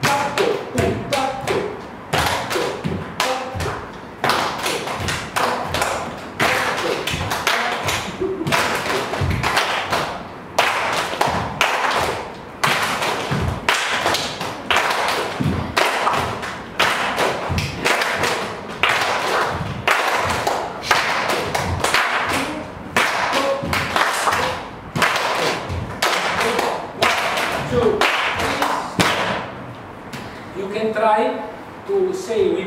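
A group clapping hands and stamping bare feet on the floor together, beating out a repeating rhythm pattern with short pauses about every two seconds.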